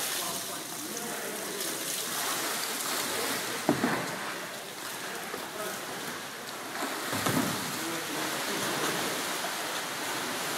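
Water splashing from kayak paddles and a kayak roll in an echoing indoor swimming pool hall, with a steady wash of water noise. Two louder, sudden sounds stand out, about four seconds in and about seven seconds in.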